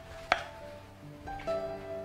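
Silicone spatula knocking against a glass mixing bowl while stirring thick matcha cream-cheese batter: one sharp knock about a third of a second in and a softer one about halfway through. Soft background music plays throughout.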